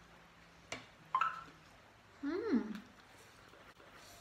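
Mouth sounds while eating: a wet click, a brief high squeak, then a short closed-mouth 'mm' of enjoyment whose pitch rises and falls.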